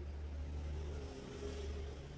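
Low steady hum with a hiss that swells and fades about a second and a half in.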